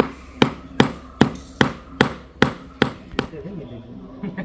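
Hand hammer driving nails to pin a strip of artificial grass into the gap between stone paving slabs: about nine even, sharp strikes, roughly two and a half a second, stopping a little after three seconds in.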